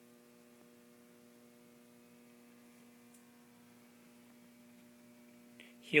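Faint, steady electrical hum: a low drone of several evenly spaced tones that holds level throughout.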